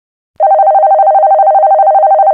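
Electronic telephone ringing: a loud, fast-trilling ring that alternates between two pitches, starting about half a second in.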